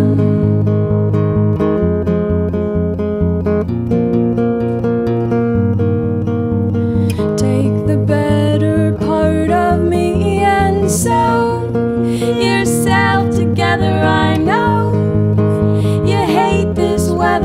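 Acoustic guitars strummed and picked in an instrumental passage of a folk song, with a steady rhythm.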